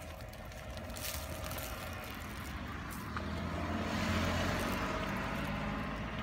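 A dog digging in dry soil, with faint scratching clicks, over a low rumble that grows louder about halfway through.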